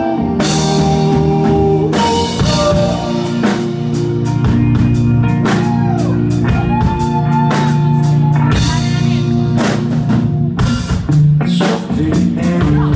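A live band playing an instrumental passage with no singing: a drum kit keeping a steady beat under electric guitar and bass, with sustained melodic notes above.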